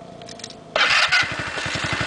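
An engine, quiet at first, abruptly comes up to full loudness about three-quarters of a second in and keeps running loud with a rapid, even firing beat.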